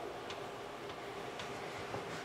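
Room tone in a pause between speech: a steady faint hum with a few faint, unevenly spaced clicks.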